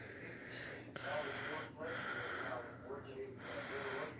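A person breathing heavily and wheezily through the nose close to the microphone, with a faint low voice murmuring underneath.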